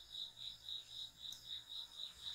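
Faint, high chirping of an insect at one pitch, pulsing about four times a second.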